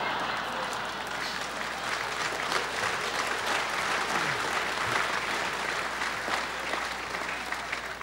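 Audience applauding: steady, dense clapping from a crowd, at an even level throughout.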